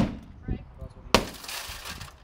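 A cloth-wrapped brick striking a car side window covered in anti smash-and-grab film: one blow at the start, then a second blow about a second later followed by nearly a second of breaking glass as the pane gives way while the film holds it.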